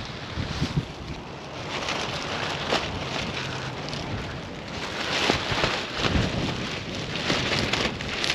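Wind buffeting the microphone while a black plastic garbage bag flaps and rustles in it, with irregular crackling rustles over a steady rush of wind.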